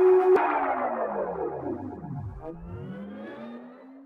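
Synthesized intro sting with echo: a sharp hit about a third of a second in, then a pitch sweeping down and rising back up as the sound fades out.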